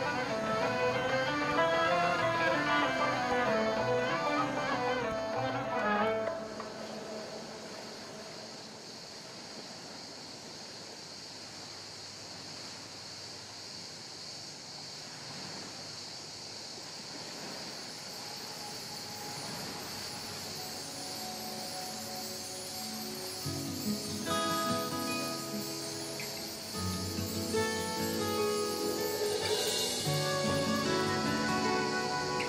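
Background music from the drama's score. It drops away after about six seconds to a soft hiss, and the instruments come back near the end.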